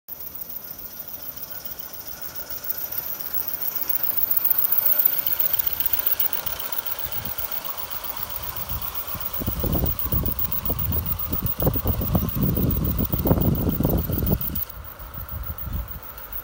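Live-steam gauge 1 Aster Union Pacific FEF 4-8-4 locomotive running fast with a freight train, valve gear notched up for a short cutoff. Its light, quick exhaust beat mixes with the rumble and clicking of the train on the track, which grows loud as it passes close in the second half and drops away suddenly near the end.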